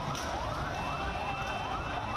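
Electronic emergency siren in yelp mode: short rising sweeps repeating about three times a second, over the din of a crowd.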